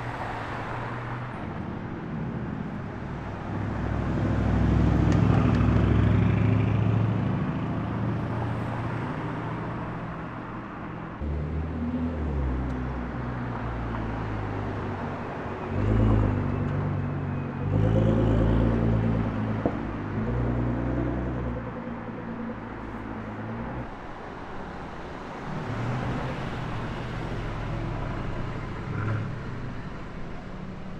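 Cars driving past one after another in street traffic, each engine note swelling and fading. The loudest passes come about five seconds in and again at around sixteen to nineteen seconds, when a Nissan GT-R drives by.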